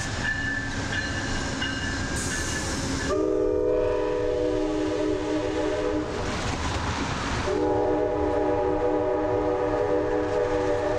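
Amtrak GE Genesis P42DC diesel locomotive sounding its multi-chime horn twice, one long blast about three seconds in and another starting near the end, over the rumble of the moving train.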